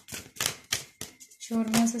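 Tarot cards being handled on the table: a quick run of about five sharp clicks and snaps of card stock in the first second or so, then a woman's voice begins.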